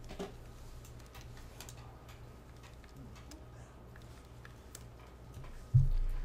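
Quiet classroom room tone: a steady low hum with faint, scattered ticks and clicks, and a sudden dull thump just before the end.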